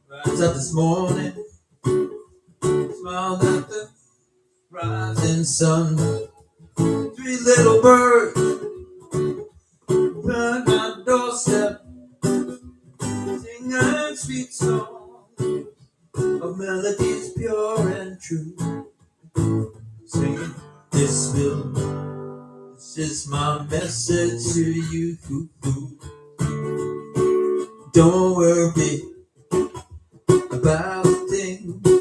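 Acoustic guitar strummed in short, choppy chords with brief gaps between them, with a near-silent break about four seconds in.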